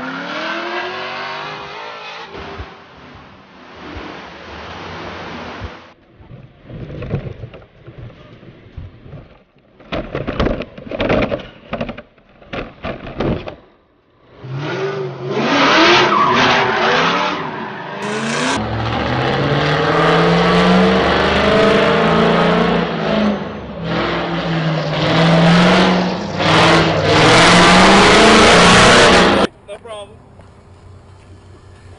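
Ford Mustang drift car revving hard while sliding, its engine pitch climbing and falling over loud tyre noise. The sound comes in short choppy bursts for the first half, then runs almost without break for the rest and cuts off abruptly near the end.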